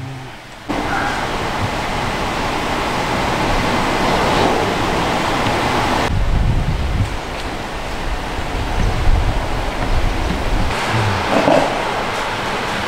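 Loud, steady rushing noise of wind on the microphone, starting abruptly about a second in, with a deeper rumble from about six to ten seconds in.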